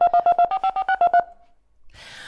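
Telephone keypad touch tones: a rapid run of about a dozen short beeps lasting just over a second, as the phone's number keys are pressed in quick succession.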